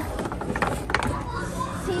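Balls clicking and rattling through a hand-turned Archimedes screw ball lift and its plastic pipes, with a quick run of clicks about half a second in.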